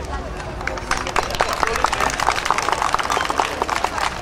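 A group of children in karate uniforms moving together through a drill on paving: a dense run of quick, irregular footfalls and cloth snaps, starting about a second in, with voices mixed in.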